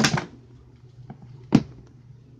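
Sharp knocks of items being handled on a pantry shelf: one right at the start and a louder one about a second and a half in, with a few faint clicks between.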